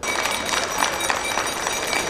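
A small handbell shaken continuously with a rapid jangle, ringing the ceremonial last bell that marks the end of the school year, over the noise of a crowd.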